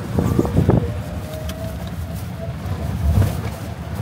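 Passenger tricycle in motion, heard from inside its cab: a steady low ride rumble, with a cluster of knocks and rattles in the first second and another jolt about three seconds in as it goes over bumps.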